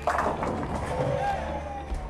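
Bowling ball hitting the pins: a sudden loud clatter of pins that dies away over about a second and a half, over background music.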